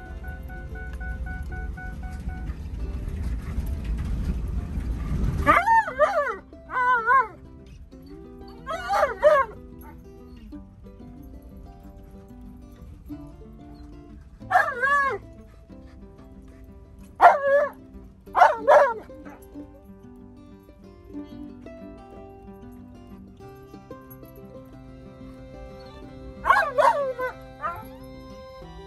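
Alaskan malamute vocalizing in short, wavering, howl-like yells, about seven of them in scattered groups, over background music. A low rumble from the vehicle driving over the field fills the first five seconds.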